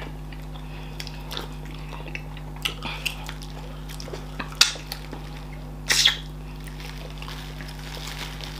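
Wet eating sounds from people eating fufu and okra soup with their hands: scattered short lip and finger smacks, the loudest two about halfway through and a second and a half later, over a steady low hum.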